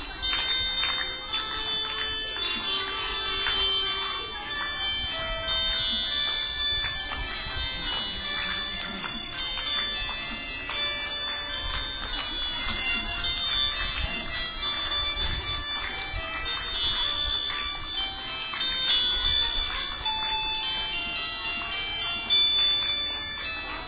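Electronic keyboard playing a slow melody of held notes.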